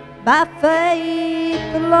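A solo voice singing a slow gospel ballad over piano accompaniment: the voice slides up into a long held note, then moves to a new note near the end.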